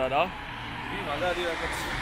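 City street traffic noise, an even rush of cars going by, with a man's voice briefly at the start and faint voices under it.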